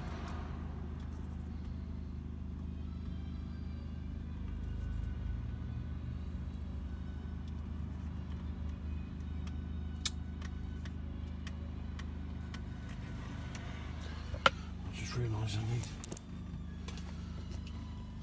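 A steady low mechanical hum runs throughout, with a few faint clicks and one sharp tap near the end.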